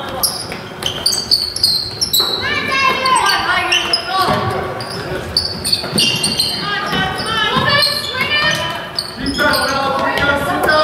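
Basketball bouncing on a hardwood gym floor, with shouted voices from players and onlookers echoing around the hall.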